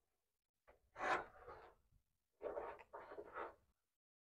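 A car hood being released and lifted open: two spells of faint metal scraping and rubbing, one about a second in and a longer one in the second half.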